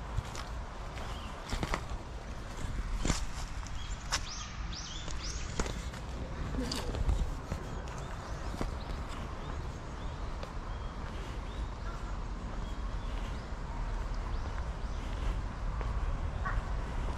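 Footsteps on pavement and irregular knocks from a handheld camera being handled, over a low rumble of wind on the microphone. A few short high chirps sound about four to six seconds in.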